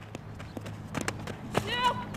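Softball infield drill: sharp clicks of footsteps on dirt and a softball popping into a leather glove, then a short high-pitched cry near the end as the throw is made.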